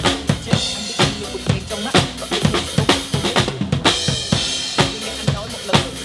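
Acoustic drum kit played in a steady driving beat, with bass drum, snare and cymbal strokes, over a remix backing track.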